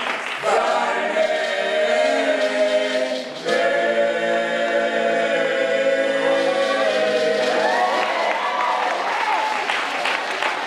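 All-male gospel vocal group singing a cappella in close harmony, holding long chords with a short break about three seconds in. Applause rises near the end as the song closes.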